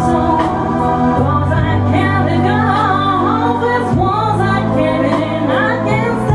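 A woman singing live into a microphone over a backing track. Her voice holds long notes with wavering runs, over sustained low accompaniment notes that change a few times.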